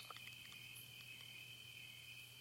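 Near silence: a faint, steady high chirring of crickets, with a faint low hum beneath.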